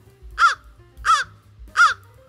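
American crow calling: three short caws about two-thirds of a second apart, each rising then falling in pitch.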